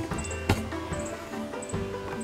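Soft background music with steady held notes, and one short click about half a second in.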